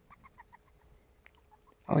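Syrian hamster giving a quick run of short, faint squeaks in the first half second or so as she sniffs, with a few more scattered after; it is an unusual sniff-squeak that comes and goes.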